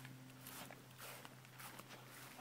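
Faint footsteps on grass, a few soft steps, over a steady low hum.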